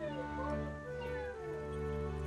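Background music of soft held chords, with a domestic cat meowing over it: a couple of short calls that arch up and fall in pitch in the first second and a half.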